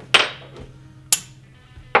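Two sharp metal clicks about a second apart, from the ball stud of an Anvil-30 ballhead being worked out through the top of its lower clamp half. The first click has a short ringing tail.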